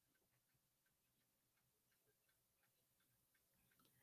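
Near silence: the sound drops out between stretches of speech.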